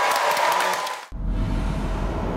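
Clapping and cheering that cuts off suddenly about halfway through. Deep, rumbling logo-sting music follows.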